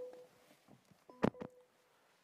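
Two soft knocks as a person settles into a car's driver's seat, the second about a second in and louder, each followed by a brief faint beep-like tone.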